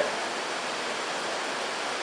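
Steady rain falling, a continuous even hiss with no separate drops or strokes standing out.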